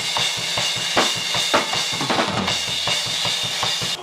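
Drum kit played fast and heavy: rapid, evenly spaced bass-drum strokes under a constant wash of cymbals, with snare hits over the top.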